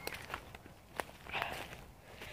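Footsteps through woodland undergrowth, with a few sharp clicks among them.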